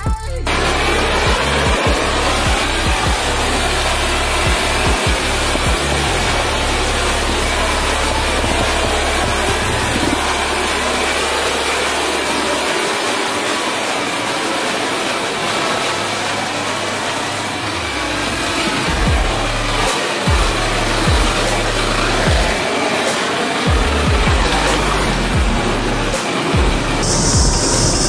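A pressure washer spraying a car, a steady loud hiss, under background electronic music with a changing bass line.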